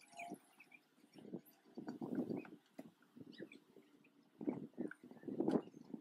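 Honeybees from an opened hive buzzing in short, irregular passes close to the microphone, coming and going every second or so.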